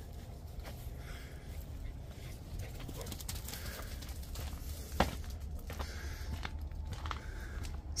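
Footsteps on grass and gravel over a steady low rumble, with one sharp crack about five seconds in.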